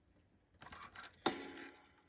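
Light clinking and rustling of small objects being handled by hand, with one sharper click just over a second in.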